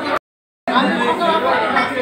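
Several people talking at once, a steady chatter of voices. It drops out completely for about half a second just after the start, then resumes.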